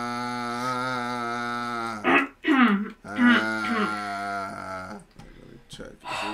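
French horn playing a long held note, then a short falling slide about two seconds in and a few more steady notes.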